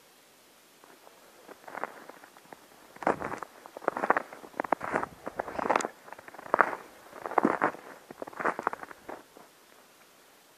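Footsteps crunching in snow, about one step a second. They begin faintly, grow loud from about three seconds in, and stop shortly before the end.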